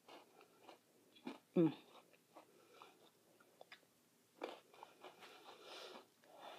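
Biting and chewing a Strawberry Pocky Midi, a short, thick biscuit stick coated in strawberry cream: a string of short crunches and chewing sounds, close to the microphone. A pleased 'mm' comes about one and a half seconds in.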